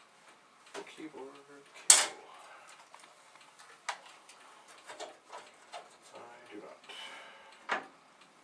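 Metal clanks and clicks from the Commodore PET 8032's hinged metal case lid being lifted and held open, with one sharp clank about two seconds in and lighter knocks after it.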